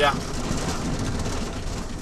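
Steady engine and road noise heard from inside a moving car's cabin.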